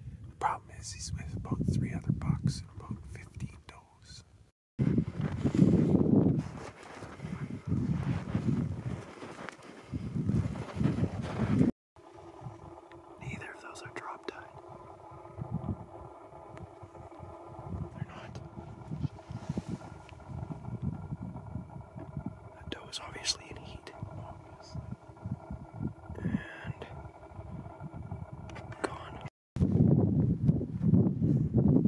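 Low whispered voices with wind buffeting the microphone. About halfway through, a steady hum of several tones sets in under the wind gusts.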